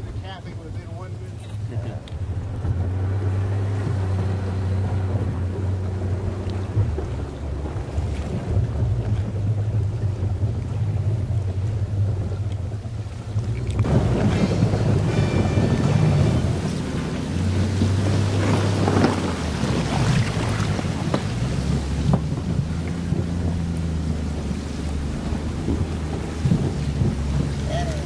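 Boat's engine running as a steady low hum under wind noise on the microphone. About halfway through, at a cut, a louder rushing noise of wind and water sets in over the hum.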